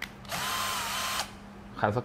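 Electric drill-driver running for about a second with a steady motor whine, backing a screw out of the steel case bracket. The pitch dips slightly just before it stops.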